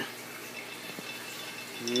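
Homemade stir plate built from computer-fan parts running with a low steady whir, water swirling in the glass jar on top. There is a single faint click about a second in.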